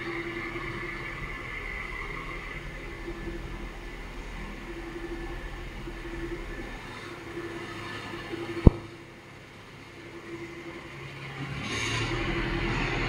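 Toyota sedan's engine running at low speed as the car creeps slowly in a parking bay. About two-thirds of the way through there is a single sharp click, after which the sound is quieter for a moment before building again.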